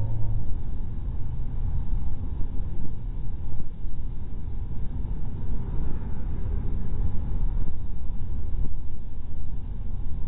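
Steady low rumble from inside a moving car: engine and road noise while driving.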